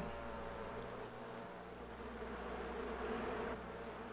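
Honeybees buzzing in the hive: a steady, fairly quiet buzzing hum.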